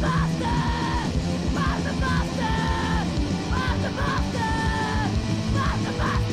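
Hardcore punk song playing loud and fast: distorted guitars and drums under shouted vocals.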